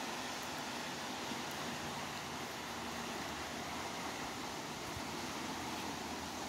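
Steady rushing of a fast-flowing river, heard as an even hiss with no distinct events.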